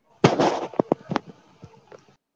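Handling noise on a webcam or microphone: a loud crackling burst about a quarter second in, then several sharp pops and clicks.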